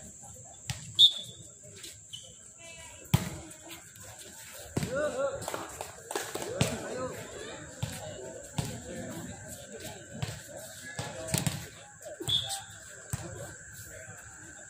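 A volleyball being struck during a rally: a series of sharp slaps of hands on the ball, the loudest about a second in and another about three seconds in. Players and spectators shout in the middle.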